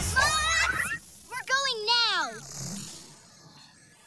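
A cartoon character's voice: a short voiced phrase, then about a second and a half in one long cry whose pitch rises and falls in waves.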